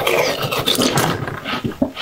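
Close-miked eating sounds: biting into and chewing a soft yellow sweet, with wet mouth noises and many small clicks throughout.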